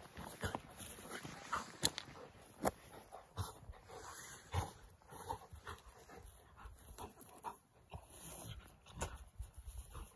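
A dog making short, irregular whines and snuffles as it rubs its face into the grass and slides along on its belly and side.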